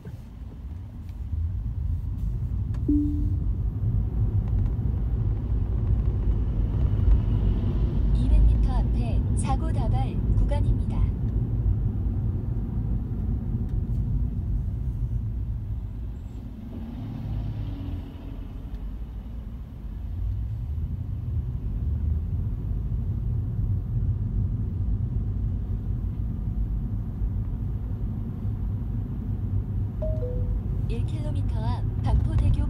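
Steady low road and tyre rumble heard inside a Tesla's cabin while it drives in city traffic, with no engine note since the car is electric. A short patch of clicks and brief chirping sounds comes about eight to eleven seconds in.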